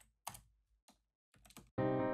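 Computer keyboard keys tapped several times in quick, uneven succession. Near the end a piano sequence starts playing loudly from the DAW.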